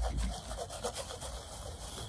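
Rubbing and scraping handling noise close to the microphone over a low rumble, loudest at the start.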